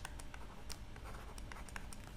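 Stylus writing on a drawing tablet: a run of faint taps and light scratches as short pen strokes are made.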